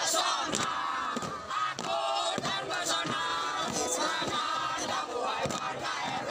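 A team of many mixed voices chanting and singing a yel-yel (group cheer) together in unison, with shouted and held sung lines.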